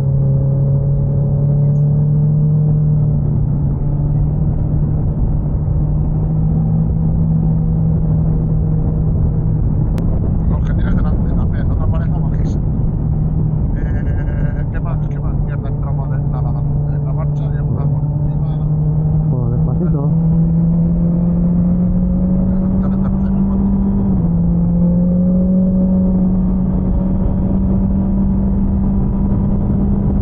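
Motorcycle engine of a BMW S1000XR, an inline-four, running steadily at road speed under heavy wind rush on the bike-mounted microphone. Its pitch creeps slowly upward and steps up sharply about three-quarters of the way through.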